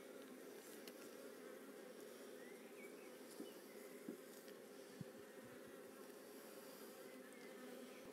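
Faint, steady buzzing of a honeybee colony around an opened hive, with a few faint light knocks near the middle.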